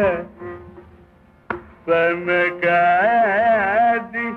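Carnatic concert music in raga Kedaragowla. A melodic phrase dies away just after the start, leaving a brief lull broken by a single sharp drum stroke. From about two seconds in, a new held melodic line with wavering ornaments (gamakas) begins.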